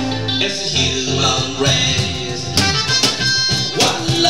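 Live acoustic band playing reggae: strummed acoustic guitars and sustained melodic notes in a short instrumental gap between sung lines, with hand-percussion strokes that pick up in the second half.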